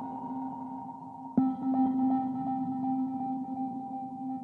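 Ambient background music: a steady sustained drone, with a bell-like tone struck about a second and a half in that rings on.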